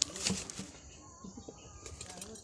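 Rustling and a few sharp knocks in the first half second as a clay sap-collecting pot is handled among the dry fronds at the top of a palmyra palm, followed by quieter rustling.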